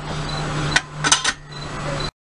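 A few light clicks and clinks of soldering work on a small switch terminal, about a second in, over a steady low hum.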